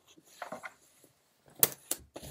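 Canvas of a Vaschy backpack rustling as its top flap is pulled down, then two sharp clicks about a third of a second apart as the flap's clip-on fastenings snap shut.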